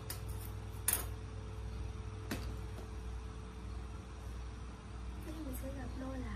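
A few sharp clicks, the loudest about a second in and another a little past two seconds, over a steady low hum; a woman's voice begins near the end.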